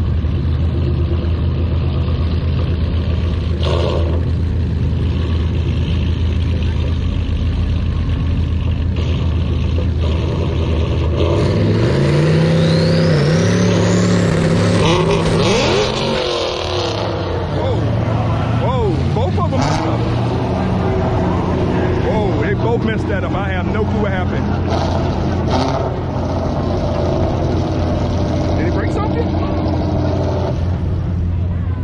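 Drag-race cars idling at the starting line, then about eleven seconds in the engines rev up hard for a launch, loud for some five seconds before dropping off suddenly, followed by scattered revs. The launch goes wrong: the onlooker thinks a car broke something, perhaps an axle.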